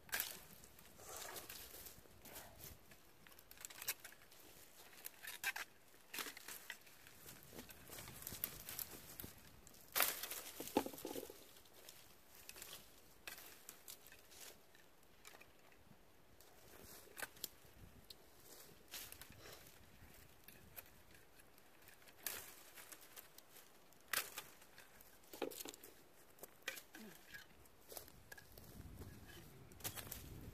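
Dry Japanese apricot branches being cut with a pruning saw and pulled free, heard as scattered sharp cracks, snaps and crackling of twigs, loudest about ten seconds in.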